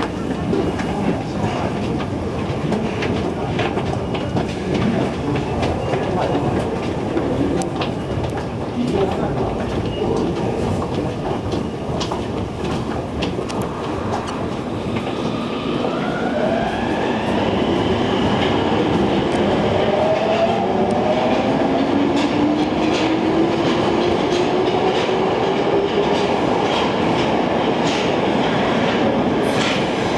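Subway train at a station platform pulling away: the whine of its electric motors rises steadily in pitch as it gathers speed, starting about halfway through. Under it are the noise of a busy station concourse and footsteps on the stairs.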